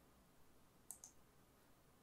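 Near silence, broken by one faint, sharp computer mouse click about a second in, with a few fainter ticks just before it.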